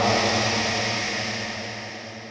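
The reverb tail of the Roland AIRA VT-3 voice transformer, set to a long reverb. A man's held word dissolves into a wash of sound that fades away steadily.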